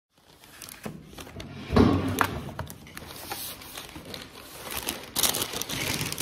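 Food packaging being handled on a table: bags crinkling and rustling, with a solid thud about two seconds in and a bright burst of paper rustling near the end.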